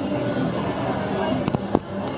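Voices, with two sharp clicks about a quarter second apart near the end.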